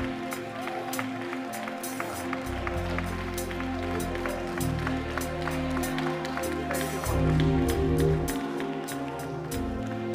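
Live church band playing slow worship music: held keyboard chords over bass guitar notes that change every second or two, with a steady light ticking rhythm of about four a second. It swells briefly a little after the middle.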